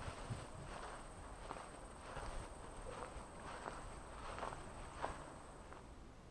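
Footsteps of a person walking through dry, overgrown grass at a steady pace, about three steps every two seconds.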